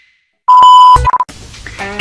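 A loud, steady electronic beep about half a second long, coming after a brief silence and followed at once by a couple of short beeps.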